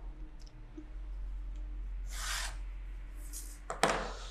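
Tailor's chalk rasping along a ruler's edge on cotton fabric, two short strokes about two and three seconds in, then a sharp knock near the end.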